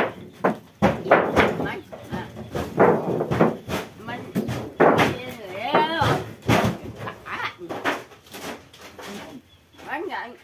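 People talking, with a few sharp knocks in between.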